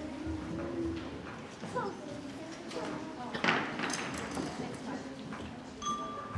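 Murmur of a crowd in a gymnasium between band pieces, with scattered voices, knocks and shuffling of chairs, stands and instruments. A short, louder rustle comes about halfway through, and a single held instrument note starts near the end.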